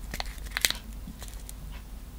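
Clear plastic bags holding photo-etched brass frets crinkling and crackling as they are handled, a few short crackles, the sharpest a little over half a second in.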